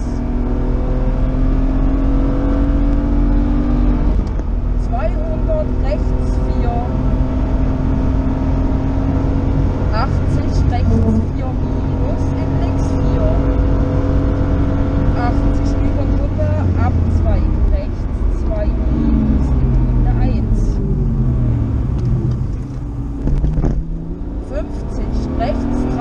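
BMW rally car's engine heard from inside the cabin under hard acceleration on a special stage, held at high revs in long steady pulls with a gear change about four seconds in. In the last few seconds the revs fall and rise several times as the car slows for and powers out of corners.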